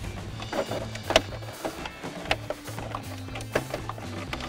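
Background music with a handful of sharp plastic clicks and knocks, the loudest just over a second in, as the truck's dash trim panel is pried loose from its clips.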